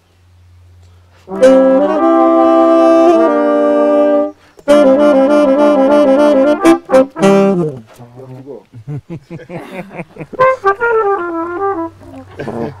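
A horn trio of saxophone, trombone and trumpet playing a held chord together, then after a short break a second chord with a quick alternating figure, which falls away about eight seconds in.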